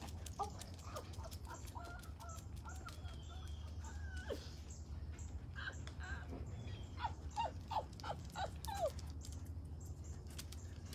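Faint high-pitched animal calls: scattered short squeaky calls, then a run of about six short falling calls about seven seconds in, over a steady low hum.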